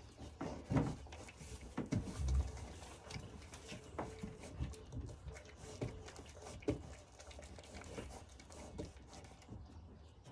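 A lamb being handled on a livestock scale: scattered light knocks and shuffles, with a heavier thump about two seconds in.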